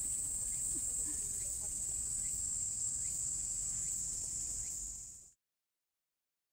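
A cicada chorus: a steady, high-pitched drone that fades and then cuts off about five seconds in.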